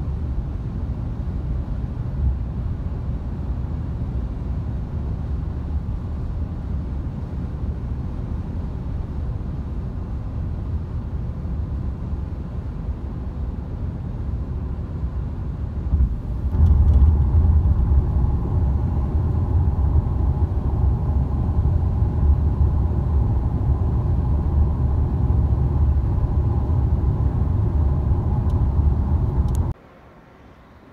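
Steady road and engine noise inside a Ford Explorer's cabin at highway speed, a low rumble. About halfway through it grows louder and a steady higher hum joins it; it cuts off suddenly just before the end.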